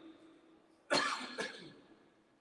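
A man coughs: a sharp burst about a second in, with a smaller one just after.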